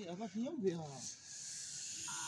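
A few quiet spoken sounds, then a steady airy hiss lasting about a second and a half, the sound of a long breath blown out.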